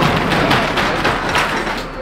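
The rear roll-up door of a box truck being pushed up open: a run of rattling, clattering knocks as it rolls up.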